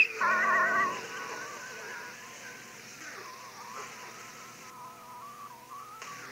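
A high, wavering voice for under a second at the start, then a faint, steady held tone.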